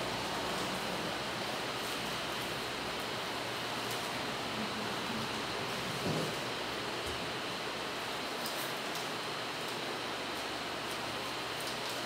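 A steady, even hiss of background noise, with one faint short sound about six seconds in.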